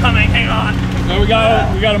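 Voices calling out over the steady low hum of a sport-fishing boat's engine.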